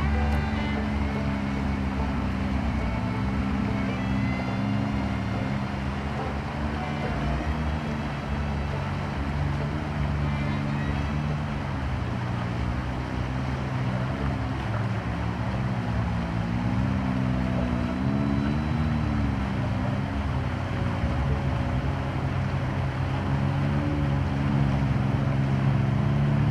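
Can-Am Maverick X3 side-by-side's turbocharged three-cylinder engine running at low speed as it drives through a river, its revs rising and falling several times in the latter half, over the steady rush of flowing water.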